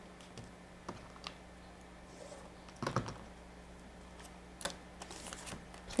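Scattered light clicks and taps of a plastic quilting ruler and foundation paper being handled on a cutting mat while a paper-pieced block is folded back and lined up for trimming, with a cluster of clicks about three seconds in.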